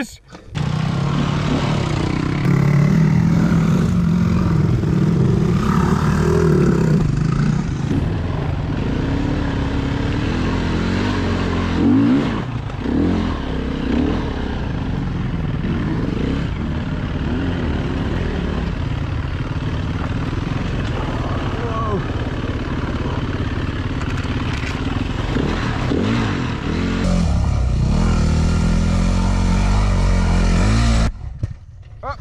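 Four-stroke dirt bike engine running as it is ridden over a rough trail. The revs rise and fall with the throttle, and there is a louder jolt about twelve seconds in.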